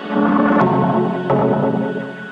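Dramatic electronic dance track with drums, bass and synth. A fuller, louder section comes in just after the start, with two drum hits about half a second and a second and a quarter in, over sustained synth chords.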